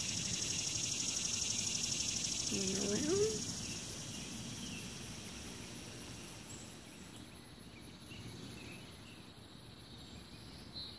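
Outdoor ambience: a steady, high-pitched insect drone that fades through the second half, with one brief rising voice-like hum about three seconds in.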